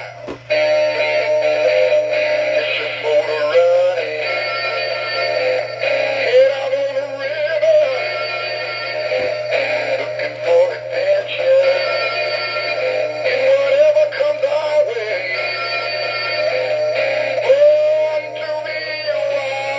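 Tommy Trout animatronic singing fish toy playing its Rocky rainbow-trout song: a recorded voice singing over backing music.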